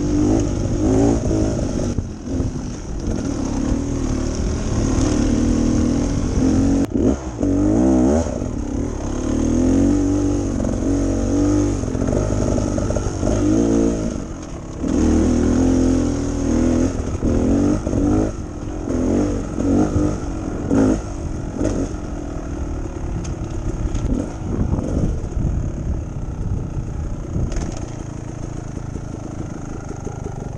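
Beta Xtrainer's two-stroke dirt bike engine under way on a trail, revving up and down with each throttle change, with clatter from the bike. It gets quieter near the end as the bike slows.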